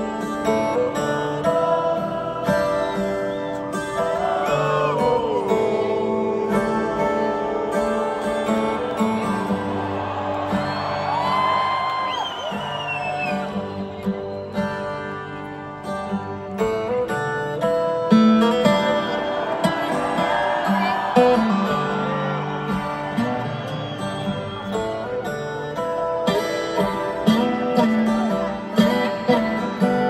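Live band music led by a strummed acoustic guitar, with a sliding, wavering melody line rising and falling over it several times.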